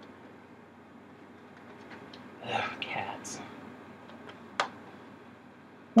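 Low room tone with a brief whispered mutter about two and a half seconds in, then a single sharp click, like a small item or its packaging being handled, a little before the end.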